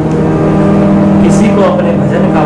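Harmonium playing steady held notes, with a man's voice coming in over it about one and a half seconds in.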